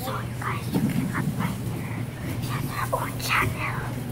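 Children whispering and murmuring quietly over a steady low hum.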